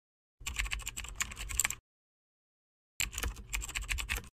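Computer keyboard typing sound effect: two bursts of rapid key clicks, each about a second and a half long, with a second-long silent gap between them.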